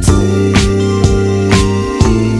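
Background music, an instrumental stretch of a song: a steady beat of about two drum hits a second over held bass notes.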